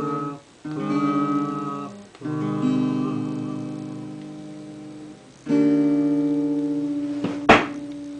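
Acoustic guitar closing a song with three strummed chords, each left to ring and fade away. Near the end there is one short, loud knock from the camera being handled.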